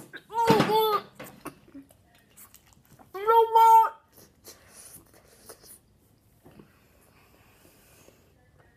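A boy's two high-pitched wordless squeals, each about a second long: a wavering one right at the start and a held one about three seconds in. They are his reaction to the sourness of the gum he is chewing.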